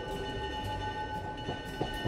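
A train rolling along the rails: a steady low rumble with a couple of clacks near the end, under background music holding steady notes.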